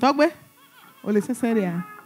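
A woman's voice giving two wordless cries with a quavering, wobbling pitch, the second about a second after the first and longer.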